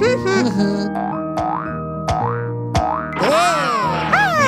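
Cartoon boing sound effects for a bounce on a space hopper: a few quick rising sweeps, then a longer rise and fall near the end, over children's background music. Brief squeaky cartoon voice sounds open it.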